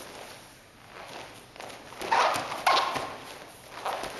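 Bare feet stepping and sliding on a training mat, with the rustle of heavy gi cloth, as one partner throws the other. Two louder, sharper sounds come about halfway through.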